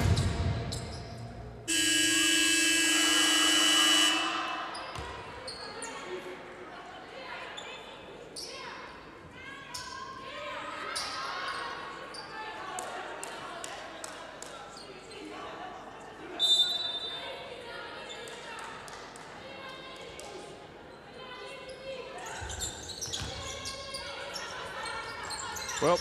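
Arena game horn sounds once, steadily for about two seconds, shortly after the start. After it come scattered basketball bounces on the hardwood court and voices around the court in a large hall, with a short, high whistle about two-thirds of the way through.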